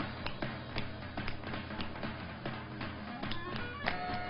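Tap shoes of two dancers striking a hard stage floor, several crisp taps a second in a quick, uneven rhythm, over dance music.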